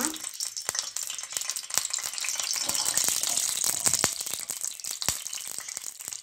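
Hot ghee sizzling in a stainless steel pan on a gas burner, a steady high hiss with frequent irregular crackles and pops.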